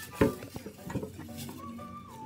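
Handling noise: one sharp knock about a quarter second in, then a few light clicks, as hands and the camera knock against a plastic reptile enclosure. Faint steady tones run underneath.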